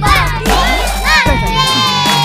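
A crowd of children shouting and yelling over background music with a low bass line.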